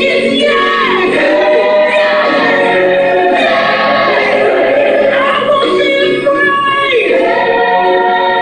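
Gospel music: a choir singing sustained, sliding notes at a steady, loud level.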